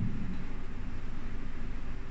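Steady background room noise, an even hiss with a faint low hum, during a pause in speech.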